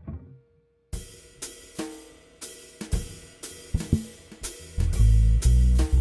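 Backing track starting up: a drum kit keeping a steady beat of about two strokes a second, with hi-hat and cymbal, joined by loud bass notes about five seconds in.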